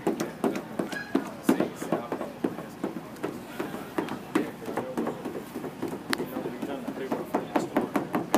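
Indistinct voices talking in the background throughout, with a few sharp clicks among them.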